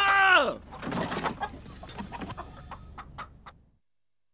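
A person's cry falling in pitch, followed by scattered small clicks and rattles inside a car cabin that fade away over about three seconds, then the sound cuts off suddenly.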